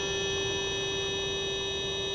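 Sustained electronic tones: several steady pitches held together as one unchanging drone, the strongest a low-mid tone with clear higher tones above it.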